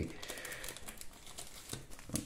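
Faint rustling and small clicks from trading cards being handled in the fingers.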